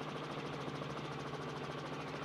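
Helicopter in flight heard through the onboard reporter's open microphone: a steady drone with a rapid, even pulsing from the rotor.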